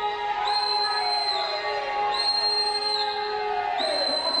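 A high-pitched whistle blown in long blasts, about a second each and repeated every second and a half or so, each dipping in pitch as it ends, over the voices of a protest crowd.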